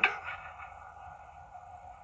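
A pause in speech: faint steady background hum and hiss, with the tail of a man's word cut off right at the start.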